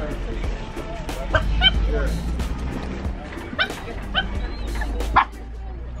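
Small dogs yipping a few times in short high calls over background music and crowd chatter with a steady low hum, which drops away about five seconds in.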